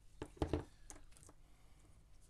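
Small sharp snips and clicks of hobby side cutters nipping through the thin supports of a 3D-printed detail part. The loudest pair comes about half a second in, with two lighter clicks near the one-second mark.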